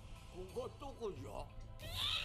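Faint anime dialogue played back from the episode: a character's voice sliding up and down in pitch for about a second, over soft background music.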